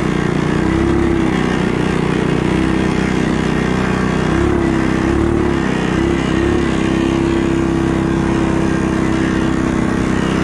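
Racing mini bike's small engine running hard at high revs, held steady, with a few quick dips and recoveries in pitch about halfway through as the throttle is eased and reopened.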